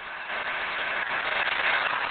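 A steady rushing noise with no distinct tones, growing louder soon after the start.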